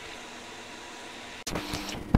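Steady, even bubbling hiss of a pot of wort at a rolling boil on a portable induction hotplate. About one and a half seconds in it cuts off suddenly to a different room tone with a low steady hum and a few clicks.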